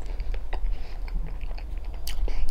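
A person chewing a mouthful of mashed potato with gravy, with soft wet mouth clicks at irregular intervals.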